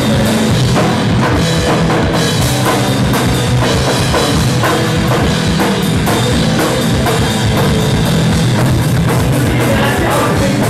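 A rock band playing live and loud: electric guitar and bass guitar over a drum kit keeping a steady beat.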